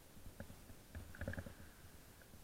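Skis running over tracked snow: a low rumble with irregular knocks and bumps, which bunch together about a second in.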